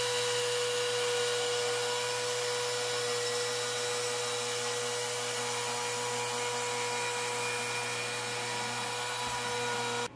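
Handheld router running at full speed with a steady high whine as its bit cuts a groove along a sheet of MDF, guided by an aluminium track rail.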